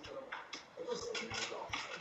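Sleeved Magic: The Gathering cards being handled on a playmat, with a quick run of light card flicks from about a second in.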